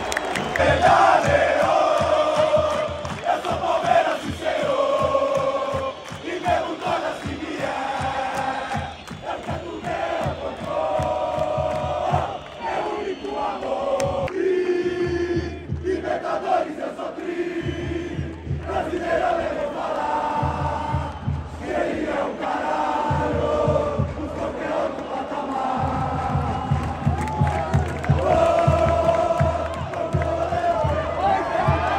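Large crowd of football supporters singing a chant in unison, the sung lines held and repeating, over a fast, steady low beat.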